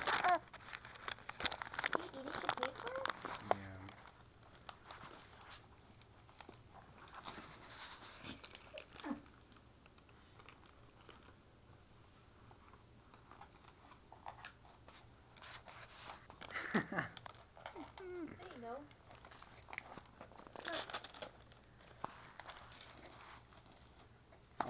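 Gift-wrapping paper crinkling and rustling in small, uneven bursts, with an occasional tear, as small hands grab and pull at wrapped boxes. Short vocal sounds come and go in between.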